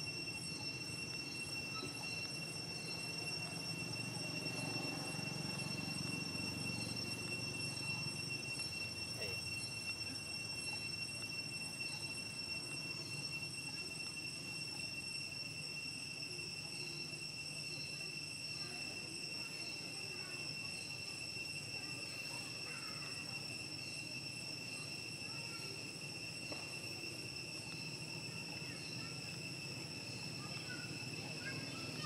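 Insects calling in a steady, high ringing drone of several tones, with a faint short chirp repeating about twice a second. Under it runs a low background rumble.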